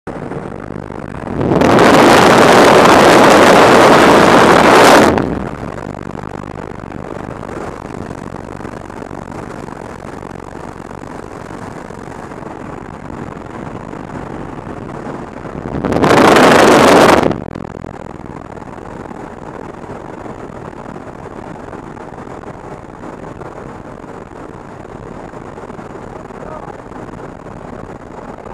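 Jump-plane cabin noise through the open jump door: a steady rush of engine and slipstream. Twice the wind blasts loudly on the camera microphone, once for about three seconds starting a second and a half in and once briefly around sixteen seconds.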